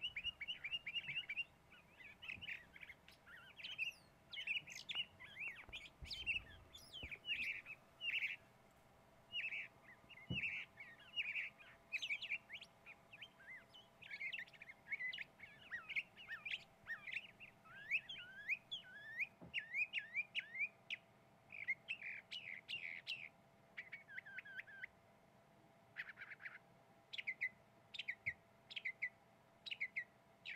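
Small birds chirping: many quick chirps and short falling calls in clusters, overlapping, with only brief pauses.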